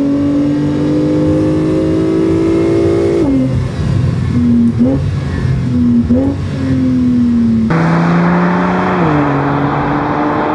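Porsche 911 Targa 4 GTS's twin-turbo flat-six engine pulling through the gears: its pitch climbs steadily for about three seconds, then drops sharply at a shift. Two short rev blips follow as the pitch falls. Then a louder rush of road and wind noise comes in over a steady engine note that steps down once more near the end.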